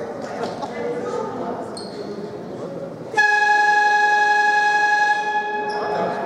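Basketball arena's scoreboard buzzer sounding one steady, loud blast of about two and a half seconds, starting about three seconds in. Voices murmur in the gym before it.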